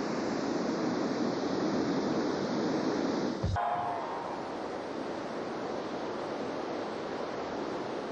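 Steady rush of a large cascading waterfall. About three and a half seconds in there is a brief low thump at a splice, after which the rush goes on slightly quieter with a faint tone in it.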